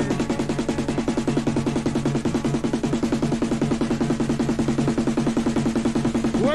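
Recorded rave DJ set of fast electronic dance music: a rapid, even drum pattern over a steady bass line, with no MC vocals.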